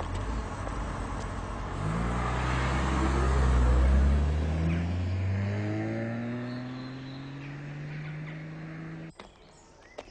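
Car engine accelerating, its note rising steadily for about seven seconds, loudest a couple of seconds in and then fading as it pulls away. The sound cuts off suddenly near the end.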